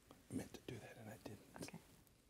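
Soft whispered or muttered speech, with a few faint clicks mixed in.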